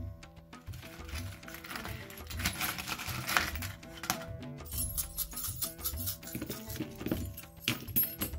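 Small metal and trinket charms rattling as a hand stirs them in a wooden box, then clinking and clicking as a handful is cast onto a paper sheet, with light Celtic background music running underneath.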